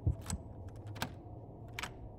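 Iron door lock clicking and rattling as a hand works at its keyhole: a few sharp, irregular metal clicks, the loudest just after the start and about a second in, over a low steady hum.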